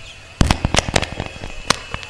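A rapid, irregular string of loud, sharp cracks and pops that starts about half a second in and keeps going.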